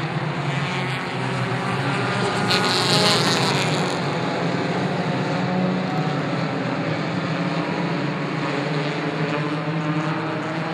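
A pack of four-cylinder stock cars racing together, several engines running hard at once in a steady, overlapping drone. It gets louder for a moment about three seconds in.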